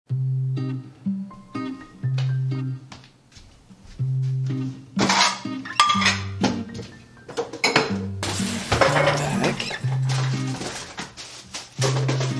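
Background music with a repeating low melody; from about five seconds in, loud, irregular clattering and clinking of kitchen dishes and utensils as food is prepared at the counter.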